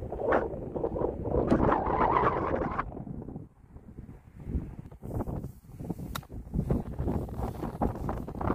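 Strong wind buffeting the microphone, heaviest for the first three seconds, then coming in gusts. A single sharp click sounds about six seconds in.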